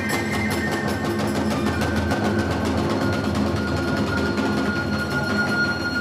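Iwami kagura hayashi: rapid, even drum and hand-cymbal strokes under a bamboo flute holding one long note that slides slowly downward.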